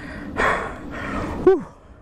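A man breathing hard after a hard pedalling effort: a long heavy exhale, then a short voiced sigh falling in pitch about one and a half seconds in.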